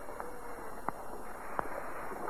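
A pause in an old cassette tape recording: steady tape hiss, with three faint, short clicks spread across the two seconds.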